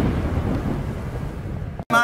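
A deep, noisy rumble from an intro sound effect, slowly fading and then cutting off abruptly just before the end.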